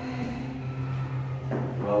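Quiet room tone with a steady low hum, then a man's voice starts near the end.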